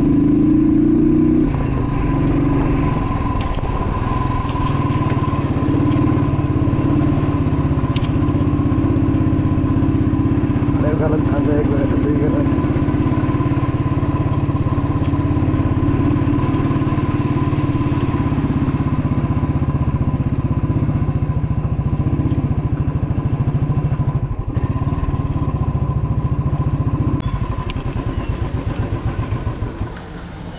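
Motorcycle engine running steadily under way. Near the end it drops back to an idle, with its separate firing pulses audible.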